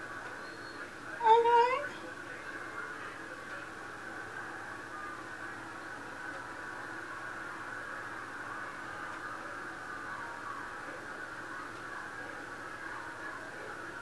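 One short rising vocal sound, a hum or 'mm', about a second in, then steady low room noise with a faint even hiss.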